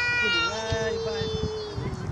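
A young child's long, high-pitched squeal, held steady and fading out near the end, with another child's voice briefly joining in about half a second in.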